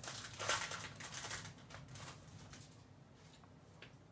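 Rustling and crinkling of a trading-card pack wrapper being opened and its cards handled: short crackles that die down about two and a half seconds in.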